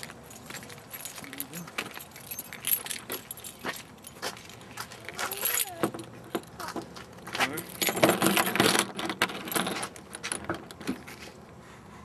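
A bunch of keys jingling in a hand, in scattered clinks that grow busiest and loudest for a second or two about eight seconds in.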